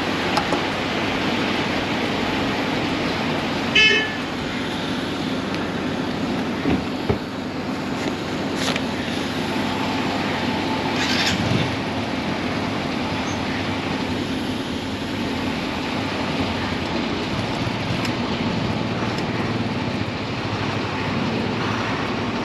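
Fuel dispenser pump motor running with a steady hum and hiss while a motorcycle is filled, and a brief beep about four seconds in.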